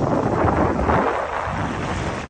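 Wind buffeting the microphone: a rough, irregular rushing rumble that eases slightly after about a second.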